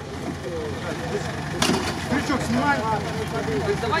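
Off-road 4x4 engine idling steadily under the chatter of onlookers, with a single sharp knock about a second and a half in.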